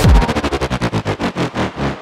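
Bass house track at a break. The full beat drops out on a deep bass hit that falls in pitch. A rapid stuttering pulse then follows, slowing steadily over the two seconds.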